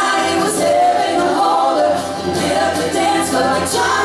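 A man and a woman singing a song together into handheld microphones, with acoustic guitar accompaniment.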